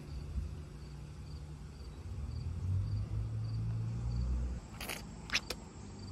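A cricket chirping steadily, about two chirps a second, under a low rumble, with a few short clicks near the end.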